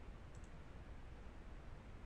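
Quiet room tone with a few faint clicks from a computer mouse.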